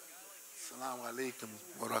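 A man's voice, close to the microphone, speaking the closing Arabic greeting ending in "wa barakatuh" after a short pause.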